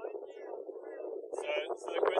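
Indistinct speech from people in a group, thin and tinny with no bass; fainter at first, then picking up about a second and a half in.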